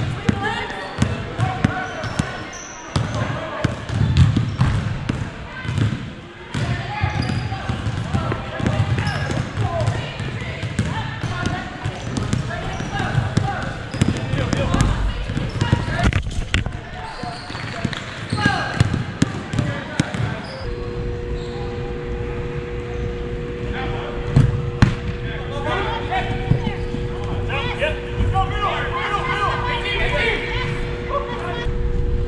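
Indoor soccer play on artificial turf: a ball being kicked and bouncing, with sharp knocks off the boards, and players' shouts and calls. From about two-thirds of the way in, a steady two-note hum runs underneath.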